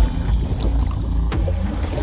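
Film sound effect of a small car ploughing through water and going under: water rushing over a steady low rumble, with one short knock a little past the middle.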